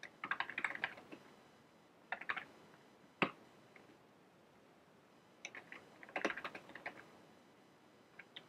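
Computer keyboard typing in three short runs of keystrokes, with a single louder key click a little past three seconds in.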